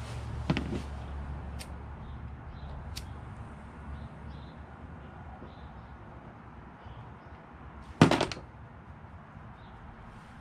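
Small parts being handled on a plastic tote lid: a few light clicks and one louder, short knock about eight seconds in, over a steady low background hum.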